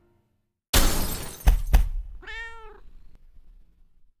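A sudden crash with two sharp knocks, followed by one short call that rises and then falls in pitch.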